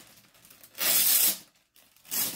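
Jersey packaging being torn open by hand: one tearing rip lasting about half a second, a little before the middle.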